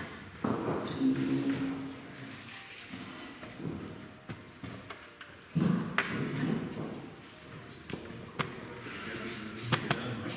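Sharp, isolated taps of wooden chess pieces and chess-clock buttons during a fast bughouse game, a handful of single clicks spread over the seconds, with low murmuring voices in between.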